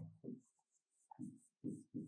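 Faint sounds of a pen writing on a board, in several short separate strokes.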